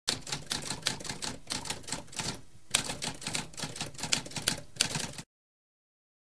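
Typewriter sound effect: rapid manual-typewriter keystrokes clattering in quick succession, with a brief pause about halfway through, stopping abruptly a little after five seconds.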